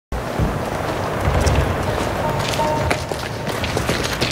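Footsteps hurrying over a rubble-strewn street, with low thumps and scattered clicks over a steady background noise. About halfway through, two faint held tones come in.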